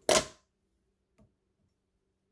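Fly-tying scissors snipping off excess marabou, a single short crisp cut right at the start, followed by a faint click a little after a second in.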